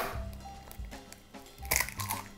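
A hen's egg knocked and broken open one-handed over a bowl: a sharp knock at the start and a crunch of shell about a second and a half later. Quiet background music underneath.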